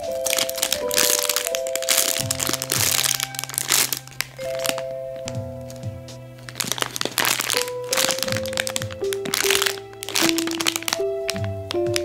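Clear plastic bags crinkling and crackling as bagged squishy toys are handled, in dense bursts, over background music with a simple melody of held notes and a bass line.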